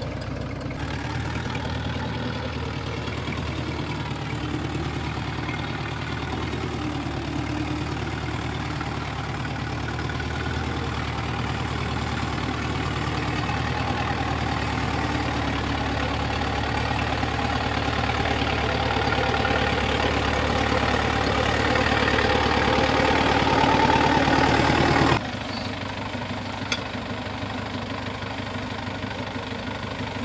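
Two four-cylinder diesel tractor engines running together as a tandem-coupled tractor drives, a steady engine sound that grows gradually louder. About five seconds before the end it drops suddenly to a quieter, steady engine sound.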